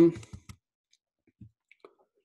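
A hesitant "um" trailing off, then one sharp click about half a second in, followed by a few faint small ticks.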